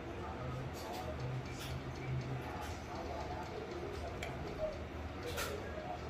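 Faint, muffled voices under a steady low hum, with a few light, sharp clicks, the loudest about five and a half seconds in.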